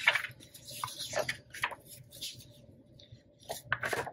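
Paper and plastic planner dashboards being handled and laid down on a desk: light, irregular rustling with a few soft taps.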